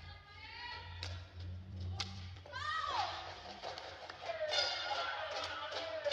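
Badminton racket strikes on a shuttlecock about once a second, echoing in a large hall, then a short falling shout as the rally ends around two and a half seconds in. Music comes in about four and a half seconds in.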